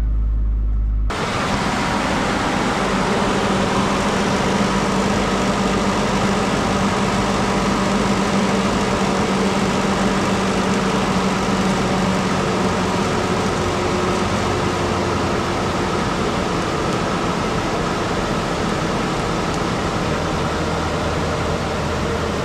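2010 Ford Ranger engine idling in freezing cold just after a start boosted by a battery charger's 200-amp engine-start mode; the battery is too weak from the cold to crank it alone. About a second in, the sound changes from a muffled hum heard inside the cab to a louder, even rushing noise of the running engine, with a low hum that fades out about halfway through.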